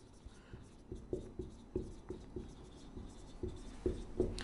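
Marker pen writing on a whiteboard: faint, irregular taps and scratches as each letter is stroked out.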